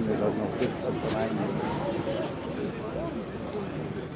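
Crowd of football supporters talking at once, a steady babble of many overlapping voices with no single speaker standing out.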